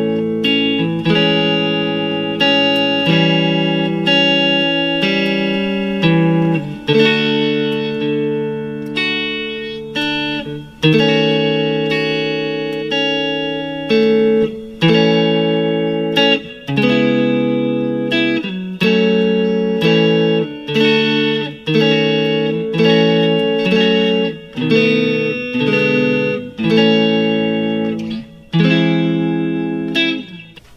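Fender Stratocaster electric guitar played through a chord progression in A major, chords struck about every one to two seconds and left to ring. The changes run A, Amaj7, A7, D, D#m7b5, C#m7, F#m, B7, E7 and end on an E augmented chord.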